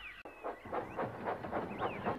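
Steam locomotive puffing: a quick, even run of chuffs that starts about a quarter-second in and grows louder.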